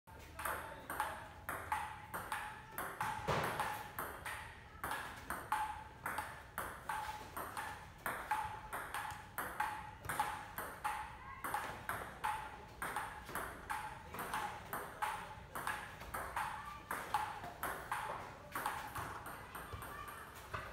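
Table tennis rally: a celluloid ball clicking off rubber bats and the table top in a steady, quick back-and-forth rhythm of about two to three hits a second, each click with a short ring.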